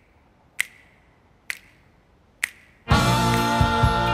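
Finger snaps keeping a slow beat, about one a second, three in all; about three seconds in, music with sustained chords and a beat comes in loudly.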